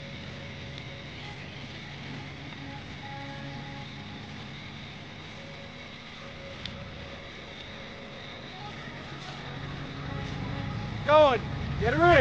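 A truck engine running with a steady low rumble that grows louder over the last few seconds as it draws near. A man shouts near the end.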